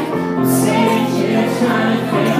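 Live song with sustained sung notes from several voices over instrumental accompaniment, recorded in the room at a small gig.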